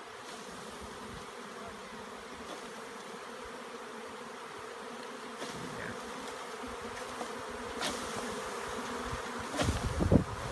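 A swarm of honeybees buzzing in flight: a dense, steady hum of many bees that grows a little louder toward the end, with a few faint clicks.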